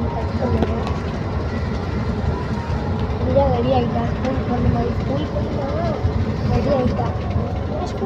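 Steady low rumble of a moving bus heard from inside the passenger cabin, with people's voices talking over it.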